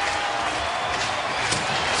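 Steady hockey-arena crowd noise from spectators in the stands.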